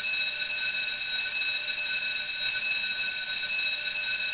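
A loud, steady, high-pitched whistle-like tone with several overtones, cutting in suddenly and held unbroken: a cartoon gag sound that drowns out a character's words.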